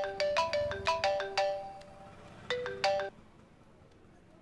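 Mobile phone ringtone for an incoming call: a quick run of bright, ringing notes, then after a short pause the opening notes again, cutting off as the call is answered.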